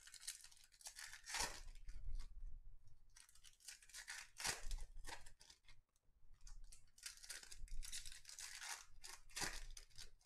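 Wrappers of 2021 Topps Series 1 baseball card packs being torn open and crinkled by hand, in several bursts of tearing and rustling a few seconds apart.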